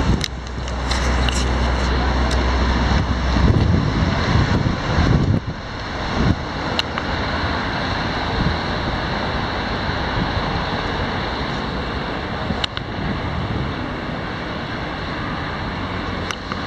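City street traffic noise, a steady wash of passing cars, with wind buffeting the microphone in stronger gusts about three to five seconds in.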